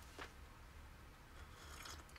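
A person taking a faint sip of hot coffee from a mug, a soft slurp over quiet room tone.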